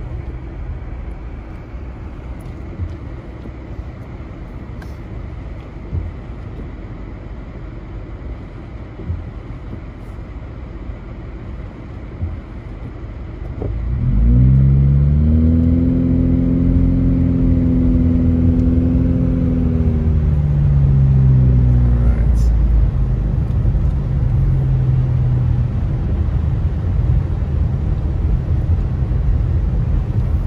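Car engine heard from inside the cabin, idling low while stopped, then about halfway through accelerating away: its pitch rises, holds for a few seconds and drops, and the car runs on with a steady road rumble.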